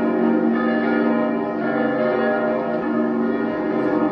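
Church bells pealing, several bells ringing together with overlapping strokes that keep sounding.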